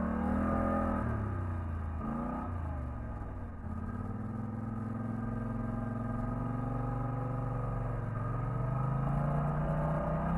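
Polaris ATV engine running as it drives along the trail. Its pitch drops a couple of times in the first few seconds, then holds steady and climbs a little near the end.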